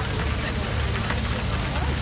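Steady rain falling on umbrellas held close overhead, with a low rumble underneath and faint chatter from the crowd.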